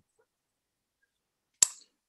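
Dead silence on a video call's audio, broken once, about one and a half seconds in, by a single sharp click that dies away quickly.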